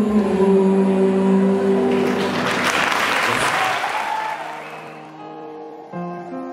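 A man's singing voice holds a long note into a microphone, then audience applause swells about two seconds in and fades away over the next few seconds.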